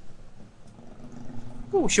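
Quiet street background with a faint steady hum, then a man's voice starts speaking near the end.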